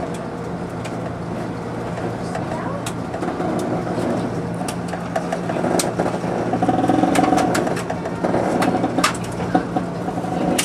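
Budd RDC diesel railcar heard from inside its cab while under way: a steady low engine drone with scattered sharp clicks from the running gear and track.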